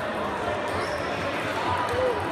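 Sports-hall ambience: table tennis balls clicking on tables and bats, echoing in the hall, with voices in the background.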